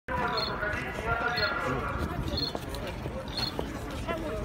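Voices of a street crowd, loudest in the first two seconds, with a short high electronic beep repeating about once a second.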